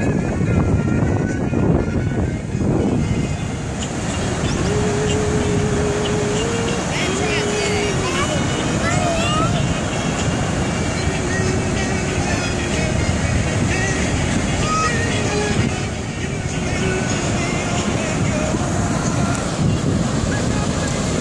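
Steady wind buffeting the microphone over ocean surf, with faint voices in the background.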